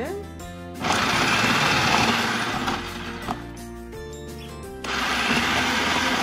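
Electric food processor running with its shredder disc, grating russet potatoes, in two runs: the first about a second in and lasting about two seconds, the second starting near the end. Background music plays between the runs.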